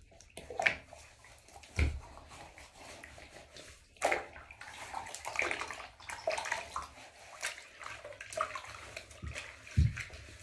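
Bath water splashing and sloshing in a bathtub as a person washes, hands scooping water and rubbing wet skin in irregular strokes. A low bump comes about two seconds in and another near the end.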